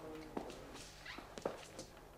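An office door being opened by its handle: a brief faint squeak at the start, then a few soft clicks and knocks from the latch and light footsteps.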